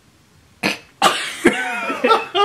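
A person gives one sharp cough-like burst about half a second in, then breaks into loud, drawn-out laughter.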